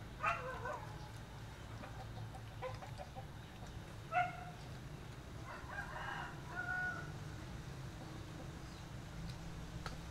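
Domestic chickens calling: a few short clucks and squawks, with a longer run of calls about six seconds in, over a steady low hum.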